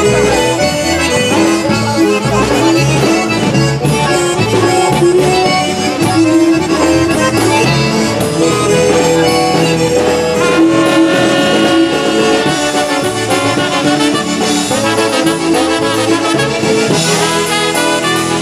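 Live polka band playing an instrumental passage: piano accordion and concertina carry the melody over a steady bass beat, and brass comes in toward the end.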